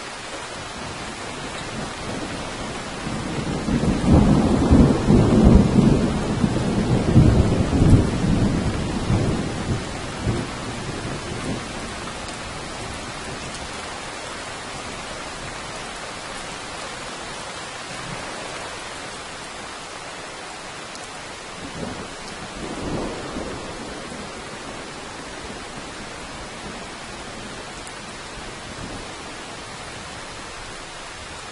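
Steady rain with a long roll of thunder that builds about three seconds in and dies away after several seconds. A shorter, fainter rumble of thunder comes about two-thirds of the way through.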